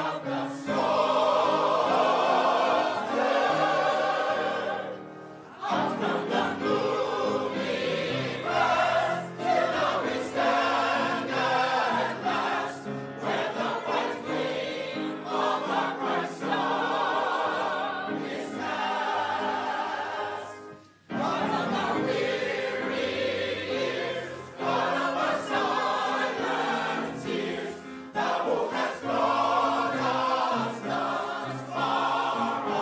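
A mixed choir of men's and women's voices singing, with short breaks between phrases about five seconds in and again about twenty-one seconds in.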